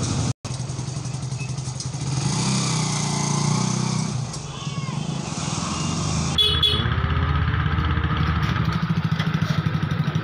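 Hero Splendor BS6's single-cylinder four-stroke engine running on a test after a clutch and gearbox repair. Its note rises and falls over the first few seconds. After a cut about six and a half seconds in, it runs steadily close by.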